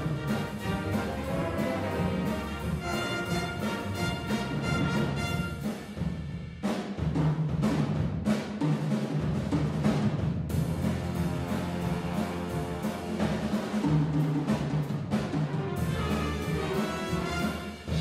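A jazz big band playing live: saxophones, trumpets, trombones and tuba over piano, bass and drums, with a strong low-brass bottom. The ensemble breaks off suddenly for an instant twice, about six and ten seconds in.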